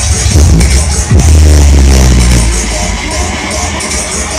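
Loud electronic dance music played through a large street DJ sound system, with a deep bass note that swoops down in pitch about a second in and holds heavily for over a second.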